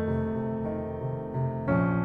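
Soft background piano music, sustained chords with a new chord struck about one and a half seconds in.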